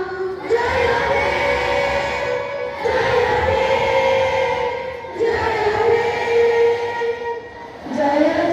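A group of schoolgirls singing in unison into microphones, a patriotic song in long held notes, each phrase lasting about two seconds before stepping to a new pitch.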